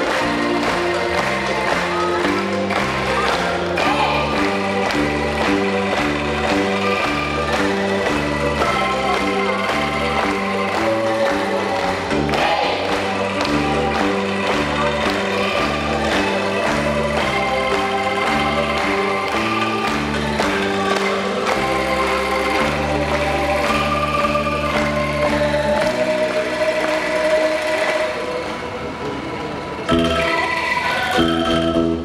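Angklung ensemble playing: rows of shaken bamboo angklung sounding held chords that change every second or so over a moving low bass part, dropping a little in loudness near the end.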